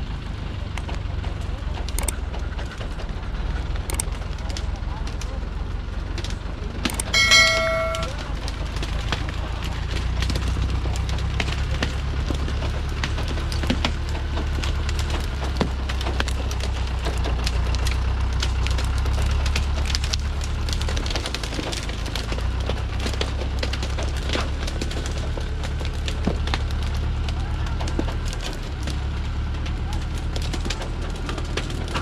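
Diesel engine of a Thaco truck overloaded with acacia logs, pulling slowly and steadily under heavy load, a low rumble with scattered cracks and clicks. A brief pitched tone sounds about seven seconds in.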